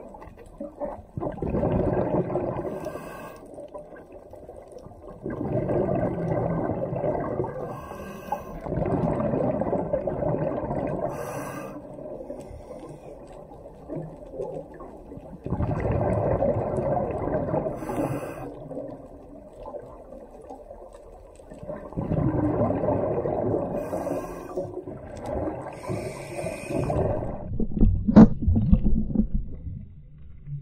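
Scuba regulator breathing heard underwater: about six bubbling, gurgling bursts of exhaled air, roughly one every five seconds, with a brief sharp knock near the end that is the loudest sound.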